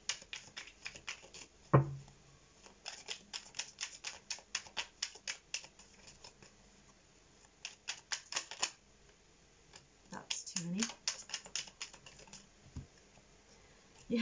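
Tarot cards being shuffled by hand: runs of quick card slaps and clicks, several a second, broken by short pauses, with one sharper knock about two seconds in.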